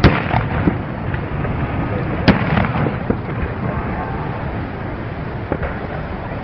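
Fireworks going off: a bang right at the start, a sharper, louder one about two seconds in, and a few fainter pops, over steady background noise.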